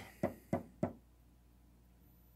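Three quick taps on a wooden tabletop, about a third of a second apart, in the first second.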